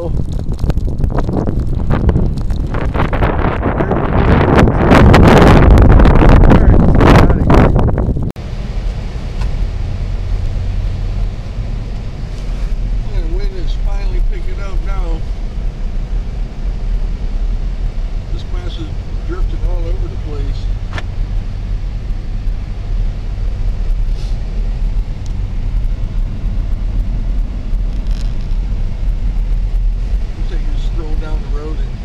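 Strong wind buffeting the microphone in a snowstorm, swelling to its loudest between about four and eight seconds. It cuts off suddenly and gives way to the steady low hum of a car's engine and tyres, heard from inside the cabin while driving through snow.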